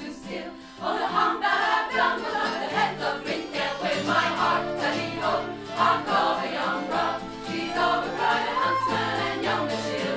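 Folk choir singing a traditional English song with acoustic guitar and fiddle accompaniment; a brief lull at the start, then the full ensemble comes back in about a second in.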